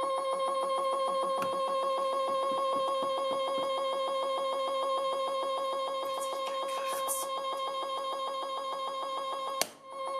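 The motor of a DIY universal test machine gives a steady whine with a fast, even pulsing as it slowly pulls an M3 brass threaded insert out of a PLA sample. Near the end there is one sharp snap as the insert rips out of the plastic.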